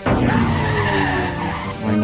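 Dramatic sound effect with music: a sudden loud rush of noise with sustained tones beneath it, easing slightly toward the end.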